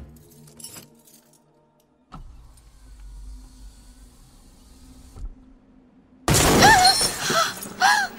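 A car's side window smashed in: about six seconds in, a sudden loud crash of breaking glass with fragments tinkling, followed by a woman's short cries. Before it, only a few faint clicks and a low rumble.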